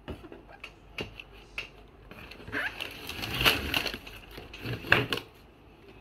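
Cardboard box and plastic packaging rustling and scraping as toy parts are pulled out. A few light knocks come first, then louder crinkling and rustling in the second half.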